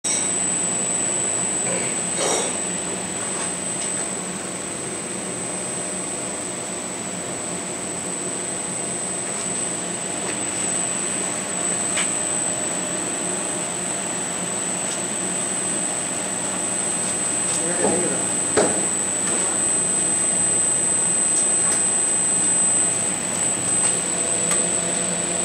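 Gogopress 600-GP rotary heat press running: a steady mechanical hum with a constant thin high-pitched whine and a few faint clicks.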